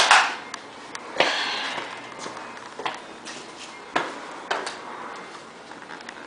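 Footsteps: a series of irregular knocks and thuds, roughly one a second, as someone walks indoors.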